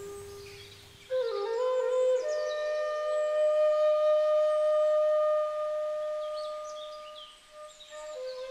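Background music: a slow melody on a flute that comes in about a second in, climbs briefly, then holds one long note that fades near the end.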